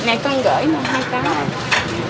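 People talking back and forth, with a brief clink of dishes near the end.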